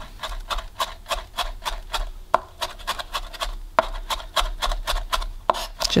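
A sharp knife mincing lemongrass stalks on a cutting board, going back over the mince to make it finer: quick, irregular chopping taps, several a second.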